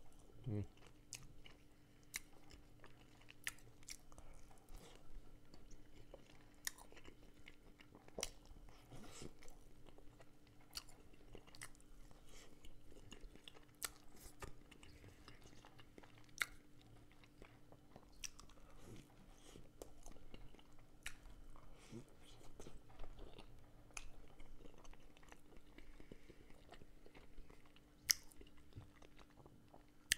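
Close-miked biting and chewing of crisp-fried qazmaq, the crust from the bottom of a plov pot: quiet mouth sounds with sharp, irregular crunches. A faint steady hum runs underneath.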